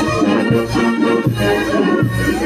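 A live dance band playing: wind instruments carry a melody over a steady beat of bass drum hits.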